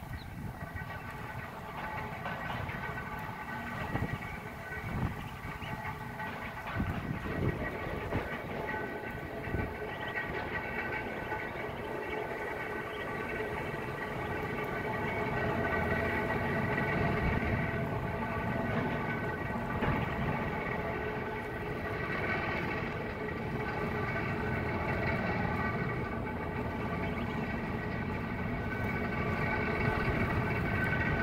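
A steady mechanical drone of several held tones over a low rumble, growing louder about halfway through.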